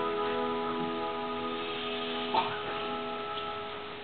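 The last chord of the song's accompaniment held and slowly fading away, with a short blip a little past halfway.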